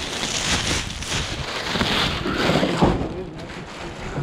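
Thin black plastic garbage bag rustling and crinkling as it is pulled open and its load of clothes and bedding is tipped out, with a thump about three seconds in.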